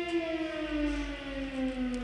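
Motor-driven siren winding down: its steady wail gives way to a slow, continuous fall in pitch.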